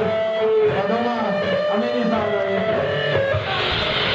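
Live punk band through a PA in a small club: amplified electric guitar playing bending, sustained notes, with the singer's voice into the microphone over it.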